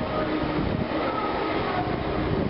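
Steady, dense rumbling noise.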